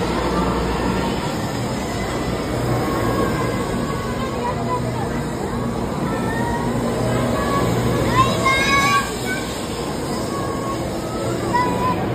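Doctor Yellow, the 923 series Shinkansen inspection train, pulling out of the station right beside the platform, with a steady low hum and rumble from its traction motors and wheels. A brief high-pitched sound rises above it about eight seconds in, and platform chatter runs underneath.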